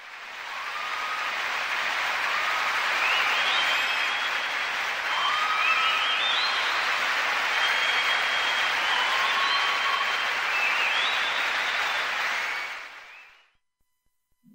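A steady rushing noise fades in over the first two seconds and fades out near the end, with short chirping whistles scattered over it.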